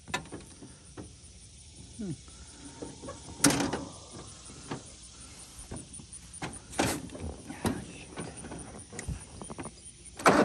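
Scattered clunks and knocks of hands working on a riding mower and its seat, the loudest about three and a half seconds in, with the engine not running.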